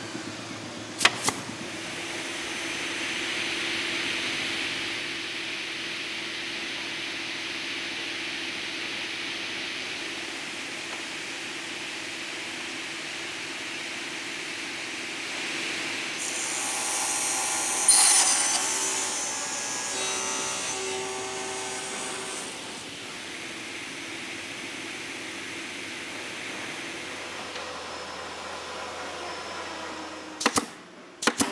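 Steady workshop noise, then a table saw cutting a wooden board. A whining cut starts about sixteen seconds in, is loudest around eighteen seconds and dies away after about six seconds.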